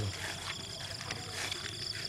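Insects, crickets by the sound, chirping in a steady, rapid, high-pitched pulse over faint field background.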